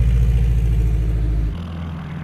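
Single-engine light plane's piston engine and propeller running steadily as it taxis past, a loud low drone. About one and a half seconds in, the sound drops abruptly to a quieter, more distant engine drone.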